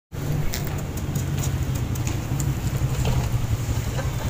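Outdoor background noise that starts abruptly: a steady low rumble over an even hiss, with a few faint clicks.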